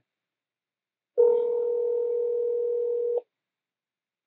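Telephone ringback tone heard through a phone's speakerphone: one steady ring of about two seconds, starting a second in, while the dialled number rings unanswered at the other end.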